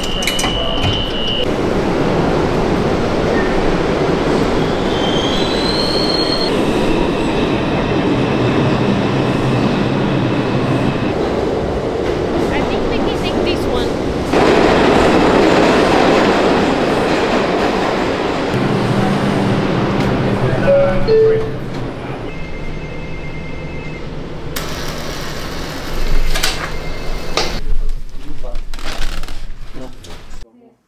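New York City subway train in a station: a loud, steady rumble that steps up about halfway through and drops off about two-thirds in, with thin high wheel squeals.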